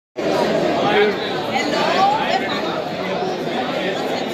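Crowd chatter: many people talking at once in a packed indoor lobby, voices overlapping into a steady hubbub with no single voice standing out.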